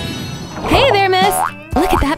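Bright background music under an animated title card, with a wobbling cartoon 'boing' sound effect about a second in; a voice starts speaking just before the end.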